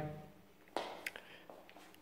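Quiet room tone with one short, sharp click about three-quarters of a second in, followed by a few fainter ticks.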